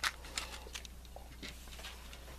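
Faint taps and rustles of a movie disc case and its paper inserts being handled, over a low steady hum.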